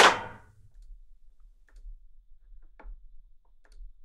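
A single sampled percussion hit from the beat's drum track, struck once at the start and ringing out for about half a second. A few faint clicks follow near the end.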